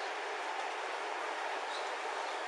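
Steady rushing background noise picked up by a body-worn camera's microphone, even throughout with no distinct events.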